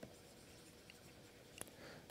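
Near silence with faint scratching and light taps of a stylus writing on a pen tablet, the clearest tap about one and a half seconds in.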